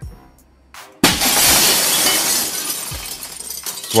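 Glass-smashing sound effect: a sudden crash about a second in, followed by breaking glass that spills and fades over the next couple of seconds.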